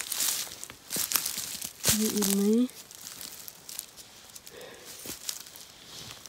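Footsteps crunching and rustling through dry leaf litter, twigs and low brush, heard as several short crackles, with a brief spoken phrase about two seconds in.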